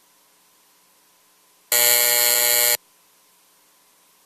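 An electric buzzer sounds once, a steady buzz lasting about a second, starting a little under two seconds in.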